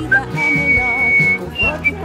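Whistling: one long steady high note about a second long, then two short notes near the end, over background music.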